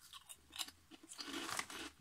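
Crunchy jalapeño-flavoured potato snack (Jalapeño Grills) being bitten and chewed: irregular crisp crunches, sparse at first and coming thicker in the second second.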